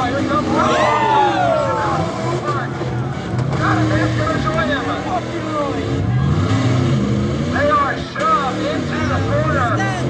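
Several demolition-derby cars and trucks with their engines running and revving, their pitch rising and falling over one another, the biggest rev about a second in. A public-address announcer's voice is heard at times.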